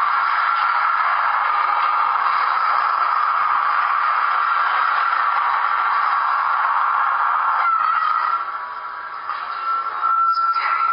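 Steady rushing, hiss-like soundtrack of a video playing through a computer's small speakers, thin and without bass. It drops away about eight seconds in, then comes back.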